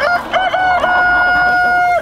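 Rooster crowing: two short notes, then one long held note of about a second that stops abruptly.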